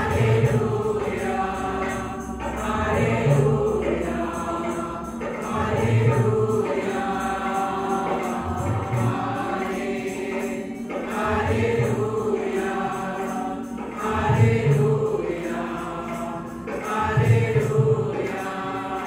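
Youth group singing a gospel praise-and-worship song together, amplified through the church microphone, with a low bass note recurring about every three seconds.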